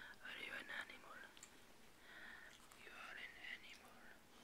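A person whispering softly, in short phrases on and off.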